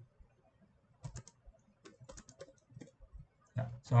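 Computer keyboard typing: a scattered run of light key clicks as numbers are typed in.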